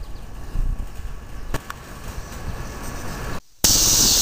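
Low microphone handling rumble with a few sharp clicks. After a brief dropout near the end, a loud, steady, shrill drone starts abruptly: a swarm of locusts (cicadas) in the trees.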